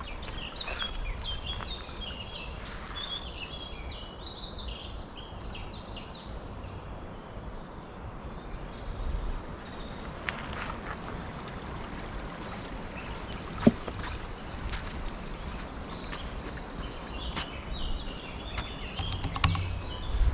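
Woodland birds singing, a flurry of short chirps in the first few seconds and more near the end, over a steady low rumble. A single sharp click about fourteen seconds in.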